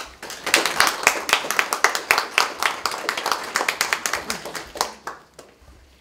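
Small audience applauding, starting suddenly and dying away near the end.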